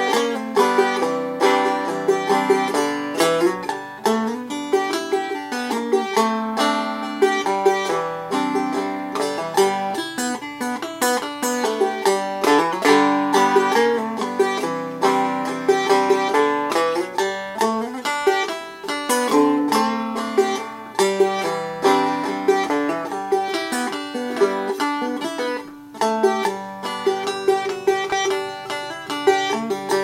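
Five-string kit-built banjo with a thin wooden head and cardboard rim, picked in a steady, continuous stream of quick plucked notes. It is light-voiced and without much volume.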